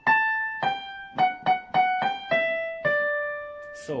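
Casio CDP-130 digital piano playing a single-note right-hand melody that steps downward: a high A, a G, three quick repeated F sharps, a G, an E, and a final D held for about a second before it fades.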